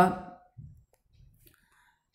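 A man's voice trails off at the end of a spoken question. A pause follows, with a few faint soft clicks about half a second, a second and a second and a half in.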